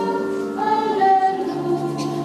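Choir and congregation singing a slow hymn in long held notes. A lower sustained note joins about one and a half seconds in.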